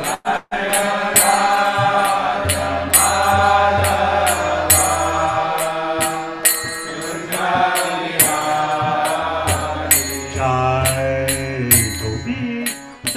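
A man's voice chanting a mantra, sung in long, gliding notes, over a steady beat of sharp strikes.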